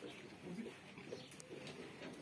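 Faint, low bird calls in a quiet animal barn.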